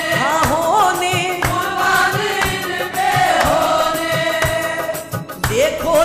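Qawwali: group devotional singing over steady held harmonium-like tones, with percussion strokes about twice a second.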